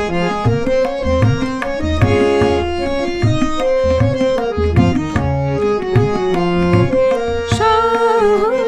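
Instrumental interlude of a Bengali film song: tabla playing a steady rhythm, its bass drum gliding in pitch, under held melody notes. A woman's singing voice comes back in near the end.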